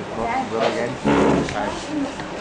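Several voices talking over one another, a roomful of students chatting, with one voice louder about a second in.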